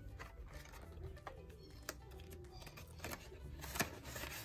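Faint background music under light handling noise from paper banknotes and a ring binder, with two sharp clicks, one about halfway through and one near the end.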